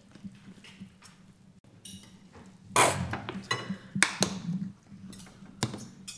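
Knife and fork clinking and scraping on china plates, with a louder noisy squirt about three seconds in as a plastic squeeze bottle of mayonnaise is squeezed out over a plate, followed by a few sharp clinks.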